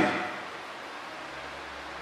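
A man's voice ends a word that dies away in the room's reverberation within the first half-second. After that there is only a steady, faint hiss of room tone.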